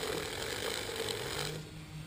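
Bike chain being cranked through a clip-on chain-cleaning device filled with soapy water, making a steady scrubbing noise that stops about one and a half seconds in.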